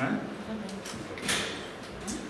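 Faint voices in the background, with a click at the start and a short sharp noise a little over a second in.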